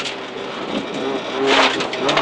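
Renault Clio Williams' 2.0-litre four-cylinder rally engine running under way, heard from inside the cabin; it grows louder, with a brief harsher burst about one and a half seconds in.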